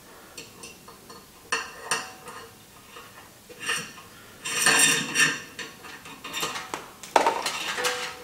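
Trailer wiring being handled and fed through a plastic connector back and a metal plug mount: a series of short clinks and rattles, busiest around the middle and again near the end.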